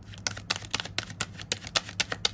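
A deck of tarot cards being shuffled by hand: a quick, irregular run of sharp card flicks and clicks.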